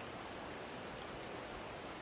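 Steady rushing of a swollen beck and floodwater running high after heavy rain.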